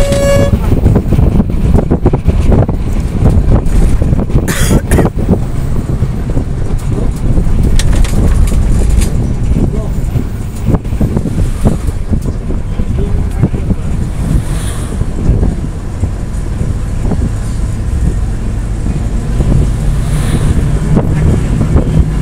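Rumble of a moving vehicle with wind buffeting the phone's microphone at an open window; a short vehicle-horn toot sounds right at the start.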